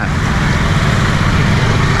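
Close-by street traffic of motorbike and scooter engines running in a slow-moving jam, a steady low rumble.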